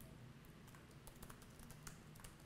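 Faint, scattered key clicks of a laptop keyboard being typed on.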